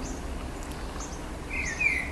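Steady background noise with faint high chirps, and a small bird starting to sing a warbling, chirping phrase about a second and a half in.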